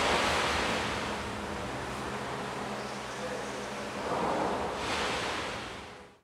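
Synthetic white noise filtered into slow swells that mimic breathing, one surge fading away at the start and another rising about four seconds in. The sound fades out to silence at the very end.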